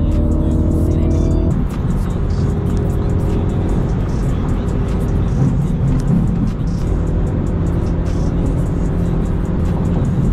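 A full-bolt-on BMW's engine and exhaust at highway speed, heard from inside the cabin along with road noise, with music playing at the same time. The steady engine drone breaks up just under two seconds in and settles back into a steady tone about seven seconds in.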